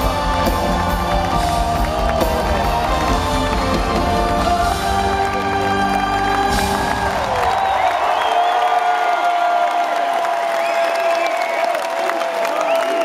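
Live rock band playing through a concert PA, drums and bass driving until about six and a half seconds in, when the song ends on a final hit. A long held note rings on under a cheering, whooping crowd.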